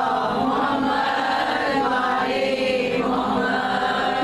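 Many women's voices wailing and weeping aloud together in mourning, a sustained, wavering collective lament.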